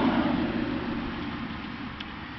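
Steady rushing noise of a passing road vehicle, gradually fading away.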